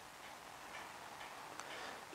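Faint ticking over quiet room hiss.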